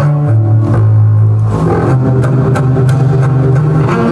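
Solo double bass played with the bow: a few long, low held notes, with the pitch changing twice.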